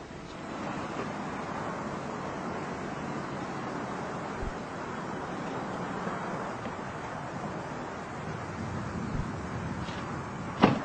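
Steady wind noise on the microphone outdoors, a continuous hiss and low rumble with no distinct events.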